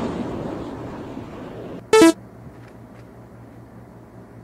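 A single short, loud horn-like honk just before halfway, dropping slightly in pitch. Before it a hiss fades away, and a steady low hum runs underneath.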